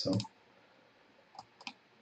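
A few quiet clicks of a computer mouse, about three in quick succession a little past halfway.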